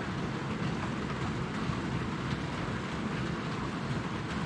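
Steady rain heard from inside a workshop.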